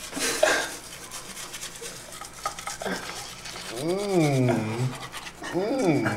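Toothbrushes scrubbing teeth, loudest just after the start. A wordless voice, drawn out and rising then falling, comes about four seconds in, and a shorter one comes near the end.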